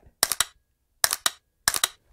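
AR-15 fitted with a Mantis Blackbeard unit being dry-fired: three quick clusters of sharp mechanical clicks, spaced under a second apart, as the trigger breaks and the Blackbeard automatically resets it for the next shot.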